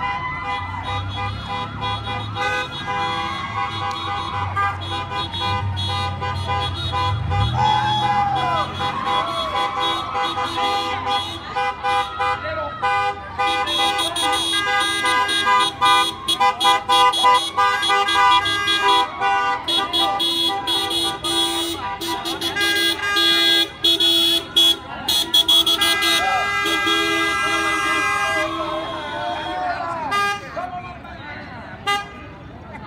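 Car and truck horns honking in a slow vehicle parade, several held and tooted horns overlapping, with the honking busier and louder from about halfway. People's voices call out over the horns, and a vehicle engine rumbles low in the first few seconds.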